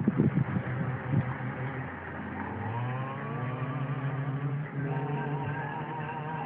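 Car driving, with engine and road noise; the engine note rises about two and a half seconds in. Music begins to come in near the end.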